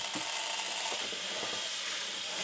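Tap water running in a steady stream from a faucet into a plastic tub of small aquarium gravel, rinsing the dust off the gravel. It is a constant, even hiss.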